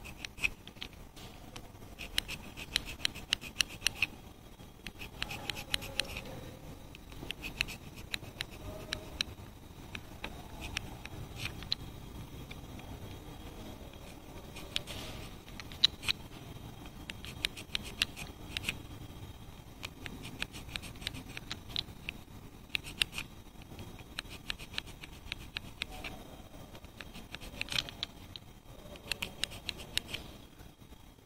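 An old hacksaw blade scraping between the copper commutator segments of a starter motor armature, in repeated runs of quick scratching strokes with short pauses. It is clearing carbon brush debris out of the gaps between the segments.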